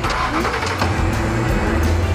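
A car engine starts with a sudden burst and then revs as the car pulls away, under background music.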